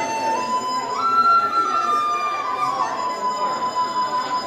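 Chinese dizi, a bamboo transverse flute, playing a slow melody of long held notes: one note at the start, a step up about a second in, then a gradual fall back to a lower note that is held to the end.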